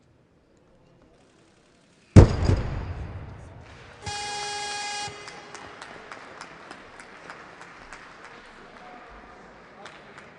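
A loaded barbell crashes onto the lifting platform about two seconds in, a single very loud impact that dies away over a second or so, after a failed jerk attempt. About two seconds later an electronic buzzer sounds steadily for about a second, followed by low hall noise.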